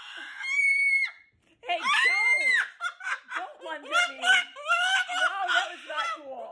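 Moluccan cockatoo screaming: a long, flat, shrill scream just after the start and a louder arched one about two seconds in, followed by a quick run of shorter, speech-like calls.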